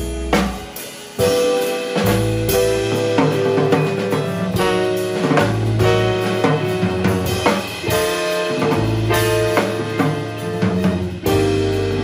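Small jazz combo playing: trombone lead over drum kit with cymbals, a low bass line and keyboard.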